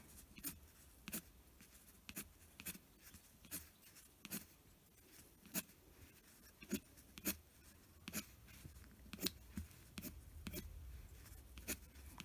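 Pencil on paper, flicking quick short strokes to draw eyelashes: faint, brief scratches in an uneven rhythm, about one and a half a second.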